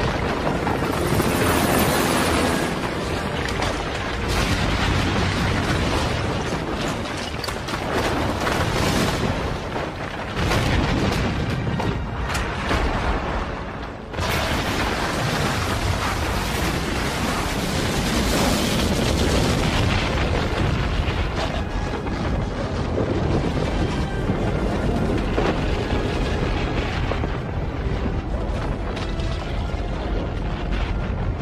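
Film disaster sound effects of a carved rock monument cracking and collapsing: a loud, continuous rumble with booms, mixed under dramatic music. The sound drops out for a moment about fourteen seconds in, then comes back just as loud.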